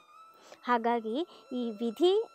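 A woman speaking in Kannada: a brief pause, then two short phrases.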